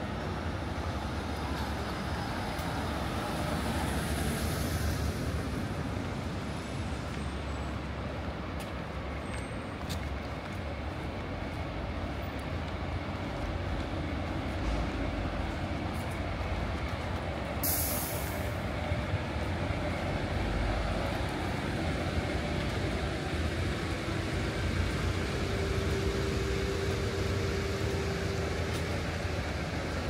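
Buses and coaches running close by in street traffic: a steady low engine rumble, with one short, sharp hiss of air brakes a little past halfway through.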